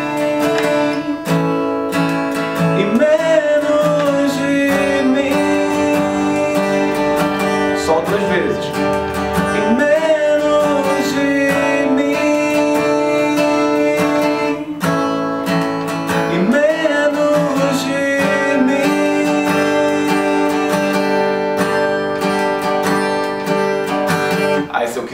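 A steel-string Epiphone acoustic guitar strummed in a steady pattern through the chord progression B minor, A and G, with a man singing the melody along at times.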